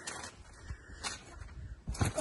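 A few faint, soft thuds of a person bouncing on an in-ground trampoline mat as he builds up to a flip.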